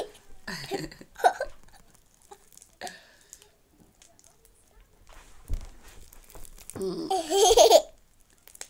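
A young girl laughing, with short vocal sounds about a second in and a louder burst of laughter near the end. There is a soft thump in between.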